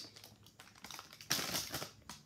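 Plastic Oreo cookie package crinkling as it is handled: faint crackles, then a louder rustle for about half a second near the end.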